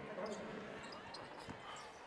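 Faint basketball dribbling on a hardwood court, heard through the game broadcast's audio, with a few soft bounces standing out.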